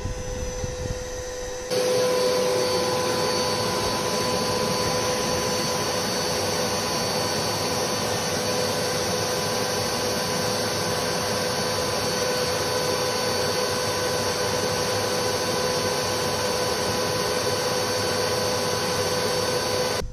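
Vacuum cleaner running steadily with a constant whine, its hose nozzle at a woodpile sucking in wasps from their nest. The sound jumps louder and fuller about two seconds in.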